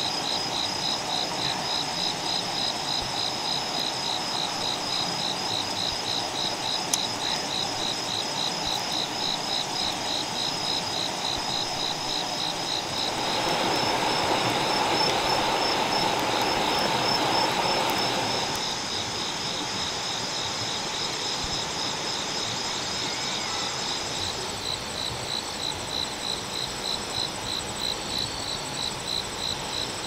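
Night insects chirping in a steady, rapidly pulsing high trill. For about five seconds past the middle a louder noisy hiss rises underneath them.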